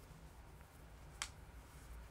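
Near silence with faint room tone and a single short, sharp click a little past a second in.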